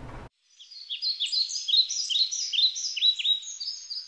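Birds chirping: a run of quick, sharp, overlapping calls, each sweeping downward, starting about half a second in and repeating two or three times a second.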